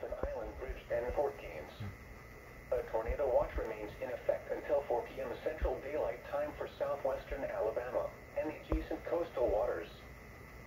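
Weather radio broadcast voice reading out a special marine warning for waterspouts, heard through the receiver's small speaker in a small room.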